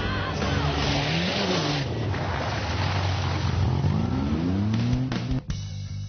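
A mud-racing 4x4's engine revving hard, its pitch climbing and falling twice, with music playing over it.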